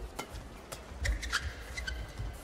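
Badminton rackets hitting a shuttlecock in a fast doubles rally: several sharp cracks a fraction of a second apart, with a few short shoe squeaks on the court floor.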